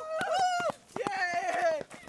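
A running group of young people yelling: two long, held shouts, the second starting about a second in.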